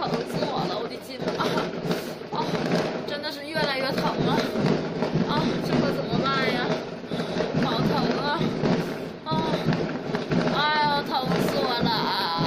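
A woman's wordless moaning and whimpering in pain from a sprained foot, in wavering, gliding cries that come and go over a continuous background din.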